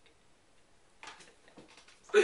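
Near silence: room tone with a few faint ticks and clicks in the second half.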